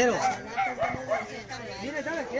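A dog yipping and whining in a string of short, rising-and-falling calls, several a second, with people's voices.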